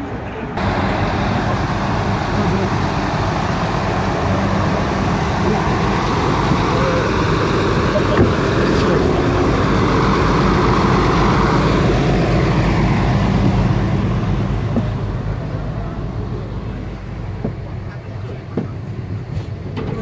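Passenger hovercraft's engines and ducted air propellers running with a loud, steady drone and a low hum. The drone swells around the middle and eases off toward the end.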